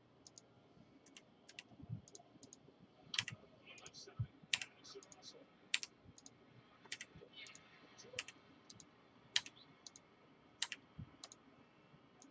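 Faint computer mouse clicks at irregular intervals, a dozen or more.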